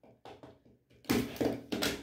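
Rotary cutter cut through layered cotton fabric along an acrylic ruler on a cutting mat. It starts with a few faint clicks, then a short scraping cut about halfway through, and ends in a sharp knock as the cutter is set down on the mat.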